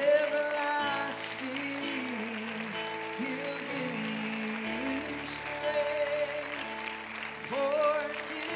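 Keyboard playing long held chords of soft worship music, with a voice singing over it and applause from the congregation.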